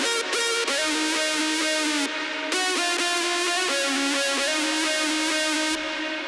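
Distorted synth lead made in Sylenth1, playing a melody of held notes with short pitch bends gliding into the next note, a portamento effect.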